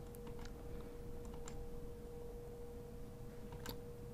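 Quiet room tone with a faint steady hum on a single pitch, and a few faint computer-keyboard clicks; the clearest click comes near the end.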